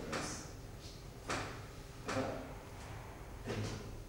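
Handling noise as the pendulum bobs and threads are taken hold of at a metal frame: four brief rustling, scraping sounds spread across the few seconds.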